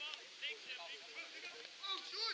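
Several short shouted calls from voices on a football pitch, heard from a distance.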